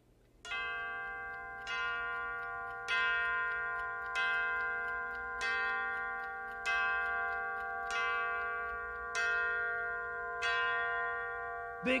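Ornate mantel clock striking nine o'clock: nine bell strikes about 1.2 seconds apart, each one still ringing as the next comes.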